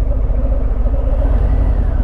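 2018 Harley-Davidson Fat Bob's Milwaukee-Eight 107 V-twin running as the bike rolls at low speed, a steady low rumble heard from the rider's mount.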